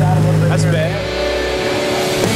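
A car engine running at a steady low drone, with a brief voice over it. About a second in, the engine fades out under rock music with held notes.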